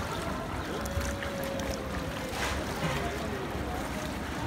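Bare feet wading and splashing through a shallow foot-washing channel of running water, with a crowd's voices in the background.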